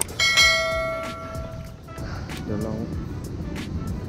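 A bright bell ding, the notification-bell sound effect of a subscribe-button animation, rings out and fades over about a second and a half. It plays over background music with a steady beat.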